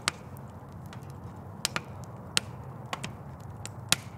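Fire in a fire pit crackling: about half a dozen sharp pops at irregular intervals over a low, steady background rumble.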